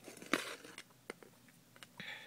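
Light handling noise from a closed folding knife and a ruler being moved into place together: a rustling click about a third of a second in, then a few faint ticks.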